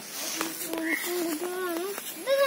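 A child's high-pitched voice talking.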